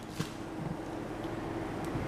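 Faint steady hum over a light hiss from a wet stainless frying pan heating on an electric stovetop, with a small click just after the start.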